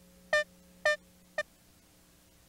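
Short synthesizer notes, all on the same pitch, repeating about twice a second. Three notes fall here, the last cut short, over a faint steady hum.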